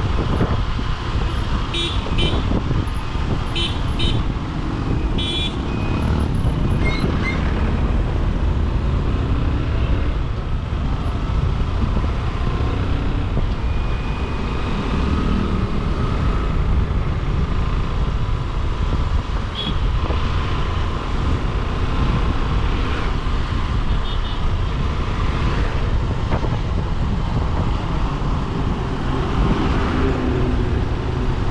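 Motorcycle riding through city traffic: a steady engine and road rumble, with a few short vehicle-horn beeps about two, four and five seconds in.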